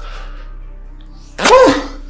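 A man's short distressed vocal outburst, a single cry or groan about a second and a half in, over quiet background music.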